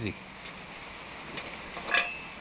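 A steady background hiss, a light tick about one and a half seconds in, then a sharp metallic clink with a brief ring near the end.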